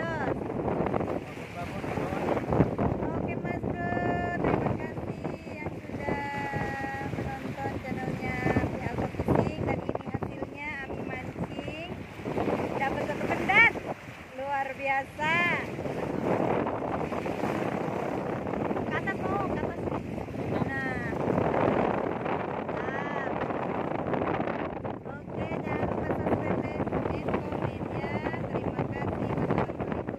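Wind buffeting the microphone and sea waves washing and breaking over rocks, a steady rushing noise, with indistinct voices over it at times.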